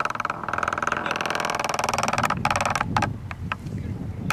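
A small motor vehicle's engine buzzing with fast, even pulses for about two and a half seconds, followed by a few sharp clicks.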